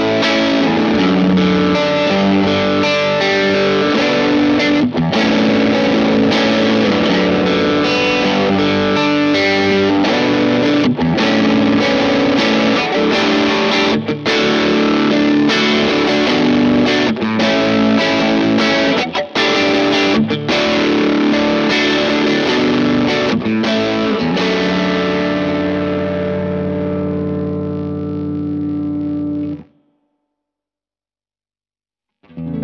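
Electric guitar, a Squier Telecaster, played through a NUX Morning Star overdrive pedal, a Bluesbreaker-style drive: chords and riffs with a clear, transparent, lightly driven tone that is slightly mid-heavy. Near the end a chord is left ringing, then the sound cuts off abruptly.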